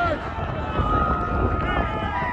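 Live field sound of a youth 7v7 football game: players, coaches and spectators talking and calling out across the field, several voices overlapping.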